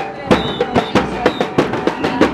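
Murga percussion band playing a fast, steady beat on bass drums with cymbals, about four sharp hits a second.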